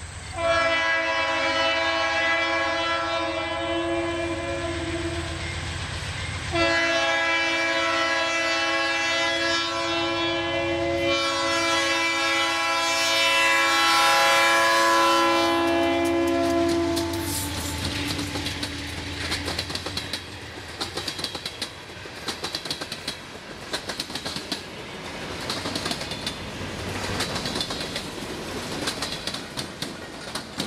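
A Providence & Worcester GE diesel freight locomotive's air horn sounds for a grade crossing in long chord blasts, with a short break about six seconds in, for roughly the first seventeen seconds. After that the passing train's wheels click and clatter over the rail joints and the crossing.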